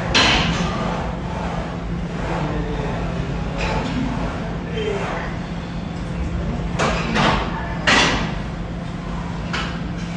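Gym ambience with a steady low hum, broken by several short, sharp noisy bursts from a set on a plate-loaded row machine, three of them close together past the middle.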